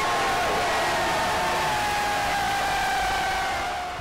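A large crowd cheering and shouting, with a long held note slowly falling in pitch above the noise. It fades just before the end.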